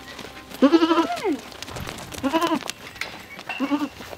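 Goats bleating: three calls, the first and longest about a second in, a shorter one midway and a brief one near the end.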